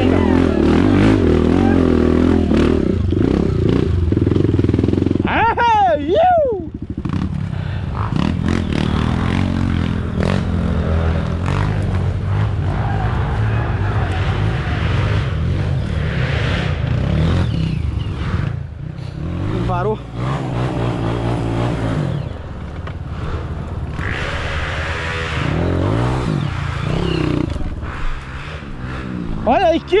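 Honda CRF dirt bike's single-cylinder four-stroke engine running throughout, revving in repeated surges that rise and fall in pitch.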